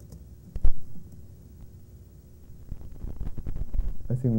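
Laptop keyboard keystrokes picked up by the speaker's microphone as low thuds and taps, with one louder knock a little over half a second in and a quicker run of taps in the last second or so.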